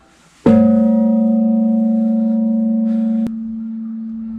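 A small bronze Japanese temple bell (bonshō) struck once with its rope-hung wooden log striker, ringing with a deep hum and several higher overtones as it slowly fades. About three seconds in, the higher overtones cut off abruptly and only the low hum carries on.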